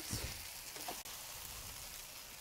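Rice stir-fry with chicken, broccoli and bean sprouts sizzling steadily in a wok over high heat, with a faint tap about a second in.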